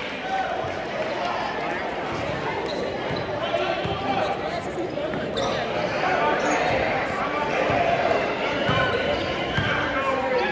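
A basketball being dribbled on a gym's hardwood floor during a game, with indistinct voices and crowd chatter echoing in the large hall.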